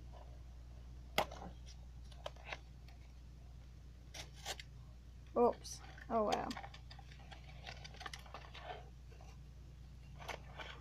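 Small clicks and scratches of fingers picking at a necklace's gift box and packaging, trying to free the necklace without ripping the box, with a couple of brief mumbled words in the middle.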